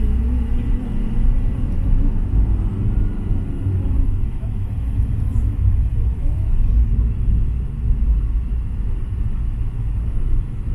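Van driving on a road, heard from inside the cabin: a steady low engine and road rumble.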